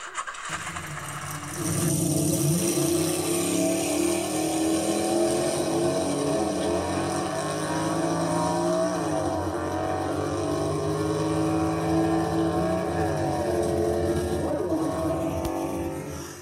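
A car engine running steadily, its pitch rising and falling briefly a few times as it is revved.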